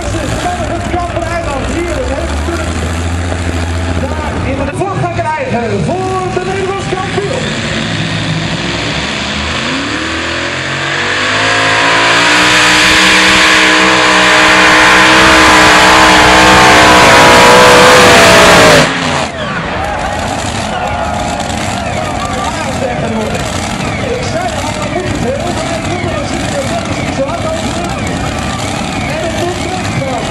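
Modified pulling tractor with several engines pulling a weight-transfer sled at full throttle, its engines climbing in pitch and loudness over about seven seconds, then cutting off abruptly. Voices are heard before and after the run.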